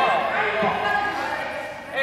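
Several young voices talking over one another, ringing in a large gymnasium.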